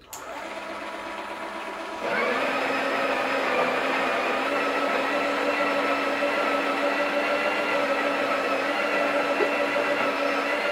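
Breville Oracle espresso machine's built-in conical burr grinder grinding coffee into the portafilter. A click and a quieter hum come first, then about two seconds in the grinder motor starts and runs with a steady whine.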